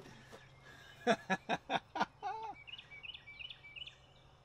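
A man laughing in a quick run of short bursts, then a bird chirping several times in the background near the end.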